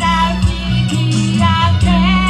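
Music: a women's choir singing over a bass and guitar backing with a steady beat.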